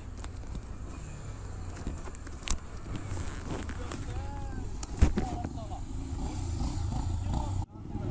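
Motorcycle engine running with a steady low rumble, faint voices behind it, and a sharp knock about five seconds in.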